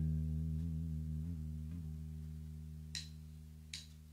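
Electric guitar chord left ringing and slowly fading, wavering slightly in pitch. Near the end come two sharp ticks about three-quarters of a second apart: the drummer's count-in for the song.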